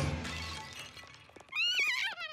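Cartoon squirrel's high, warbling chatter starting about one and a half seconds in, after a few light clicks, over soft background music.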